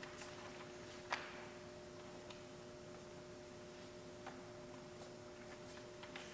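Quiet room with a faint steady hum; one sharp click about a second in, and a few soft ticks and rustles.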